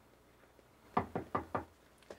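Four quick knocks on a door, about a second in, evenly spaced.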